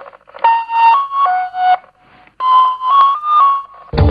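Soundtrack of a Walls ice cream TV commercial played over a hall's loudspeakers: a slow melody of about seven clear held notes, stepping up and down in pitch, each swelling and fading. A full band with a beat comes in at the very end.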